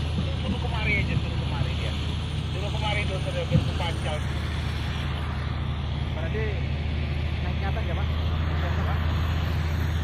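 A heavy engine running steadily with an even low drone, with faint voices in the background and a single click about three and a half seconds in.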